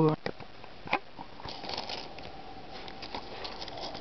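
A couple of light clicks in the first second, then faint rustling and crackling as small resin model-kit parts are handled.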